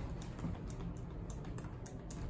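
A series of light, irregular clicks, about six in two seconds, over a low steady hum.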